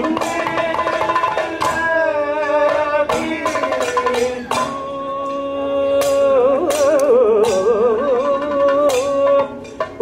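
Kathakali music: a wavering, ornamented vocal melody over steady held notes, with frequent strokes on the chenda and maddalam drums.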